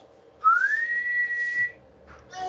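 A person whistling a single note that slides upward and then holds steady for about a second before stopping.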